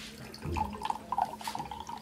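Water being poured into a drinking glass, starting about half a second in.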